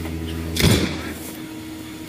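A steady mechanical hum with one sudden loud thump about half a second in, after which the hum drops away to a fainter steady tone.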